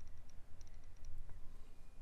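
Faint quick ticks from a stylus on a drawing tablet as a line is traced, clustered in the first second, over a low steady hum.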